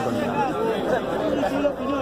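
Speech: a man talking over crowd chatter.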